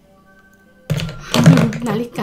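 Faint steady background music, then about a second in a sudden thunk and a woman's loud voice in a brief wordless exclamation.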